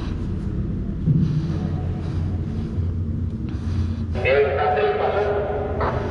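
A steady low machinery hum inside a ship's steel ballast tank. About four seconds in, a voice calls out and holds for nearly two seconds.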